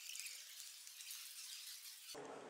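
Faint, steady hiss with no low end.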